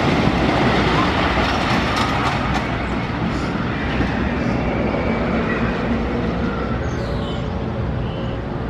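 Blue Streak, a Philadelphia Toboggan Coasters wooden roller coaster: a train rumbling and clattering along its wooden track as it passes, fading gradually as it moves away.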